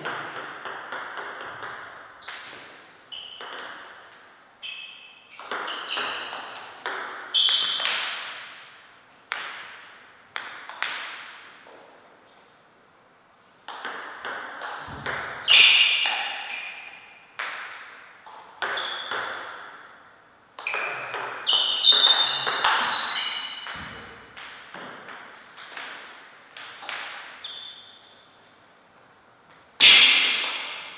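Table tennis rallies: the ball clicking off paddles and the table in quick succession, each hit with a short ringing echo, with brief pauses between points.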